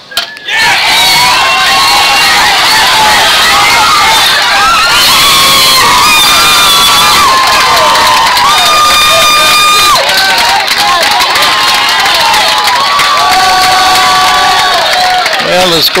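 Crowd of spectators cheering and shouting for a hit, starting suddenly about half a second in and staying loud for about fifteen seconds, with many high voices calling out over the din.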